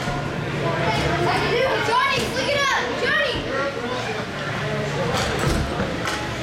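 Crowd of spectators at a youth ice hockey game: overlapping voices and shouts, with a cluster of high calls about two to three seconds in.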